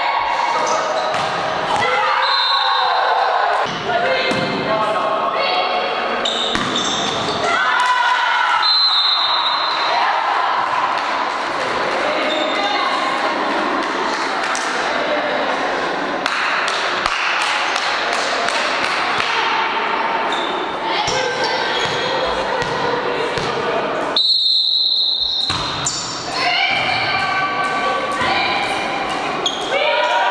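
Indoor volleyball rally: the ball being struck, amid players' calls and shouts, echoing in a large sports hall.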